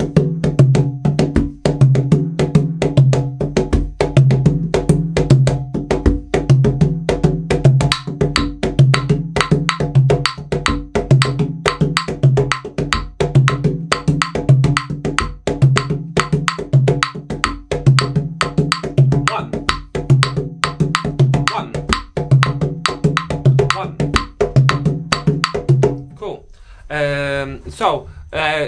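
Congas (tumbadoras) played by hand in a rumba pattern together with claves: the clave gives the call and the congas answer. The drumming stops near the end as a voice comes in.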